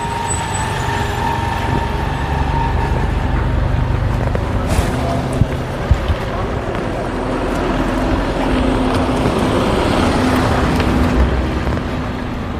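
Street noise with a motor vehicle's engine running nearby: a steady low hum over a wash of traffic sound, growing a little louder in the second half.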